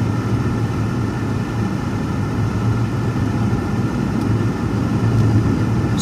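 Steady low drone of a car's engine and road noise heard inside the cabin while driving along, with no other events.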